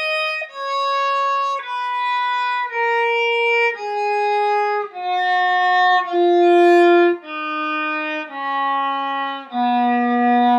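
Viola playing the descending half of a two-octave F-sharp major scale. Each note is bowed separately and held about a second, stepping steadily down in pitch.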